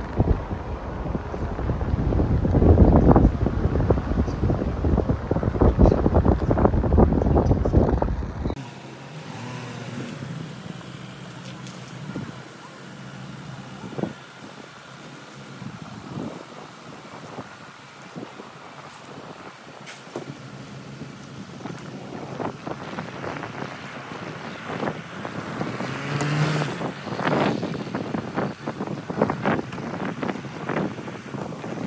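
Wind buffeting the microphone, heavy and gusty, for the first eight seconds or so; it stops abruptly. Then a quieter outdoor background with a few light knocks, and rushing gusts building again near the end.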